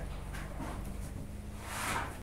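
Low steady background hum with faint rustling that swells briefly near the end, as of someone moving close to the microphone.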